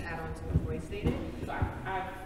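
Indistinct voices, off the microphone, in a large room.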